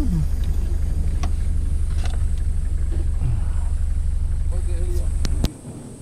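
Low, steady rumble of a safari 4x4's running engine heard from inside the cabin, with a few sharp knocks and rattles. It cuts off abruptly about five and a half seconds in, leaving a much quieter outdoor background.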